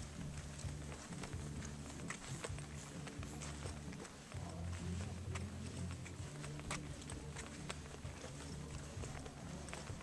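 Footsteps walking on a brick path, sharp irregular steps about two a second, over a steady low rumble.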